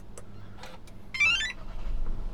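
Audi Q3 ignition-on chime: a short run of electronic tones stepping up in pitch about a second in, while the digital instrument cluster starts up. Near the end a low rumble sets in as the 35 TFSI petrol engine starts.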